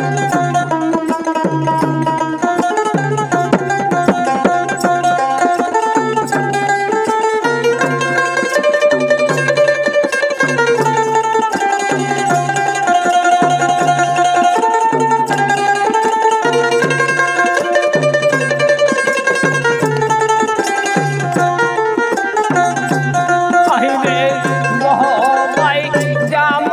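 Instrumental interlude of Bengali baul folk music: a dotara plucks a winding melody over a low drum beat that repeats about every second and a quarter.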